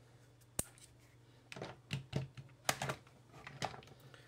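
Hand crimping tool closing on a wire ferrule, with one sharp click about half a second in, then several clusters of lighter clicks and rattles as the tool is worked and released.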